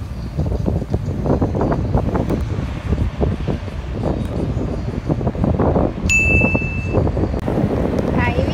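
Steady outdoor rumble with irregular gusts of wind noise on the microphone. About six seconds in, a single high electronic beep sounds for just under a second.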